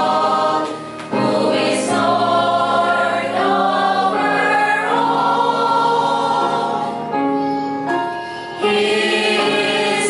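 A mixed choir of women's and men's voices singing a hymn in held notes, with brief breaks between phrases.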